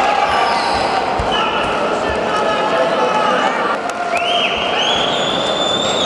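Spectators in a large hall shouting and calling out over one another, with several high-pitched shouts from about four seconds in. A few dull thuds come in the first two seconds.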